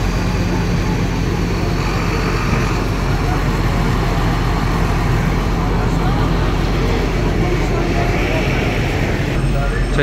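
Busy street ambience dominated by a steady low hum of idling motor vehicles, with indistinct voices of passers-by.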